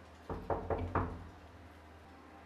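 Knuckles knocking on a wooden door: four quick raps in under a second, the last the loudest.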